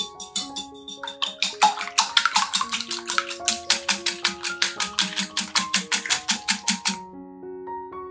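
Stainless wire whisk beating eggs in a glass bowl: fast, even clinking strokes, about six a second, starting about a second in and stopping about a second before the end. Soft piano music plays underneath.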